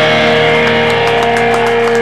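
A rock band's distorted electric guitars holding a song's final chord, ringing steadily, with a few faint claps starting partway through.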